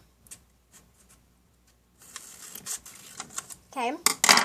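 Scissors cutting paper: a few faint snips, then a steadier run of snipping from about halfway through.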